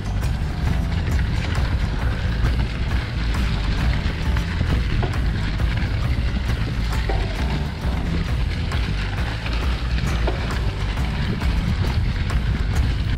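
Mountain bike rolling over a leaf-covered dirt trail: tyres crunching through dry leaves, with small knocks and rattles from the bike, under a steady low rumble of wind on the microphone.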